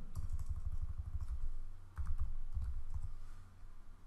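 Computer keyboard typing: a short run of keystrokes editing and entering a terminal command, heard mostly as dull low thumps with a few faint clicks, thinning out near the end.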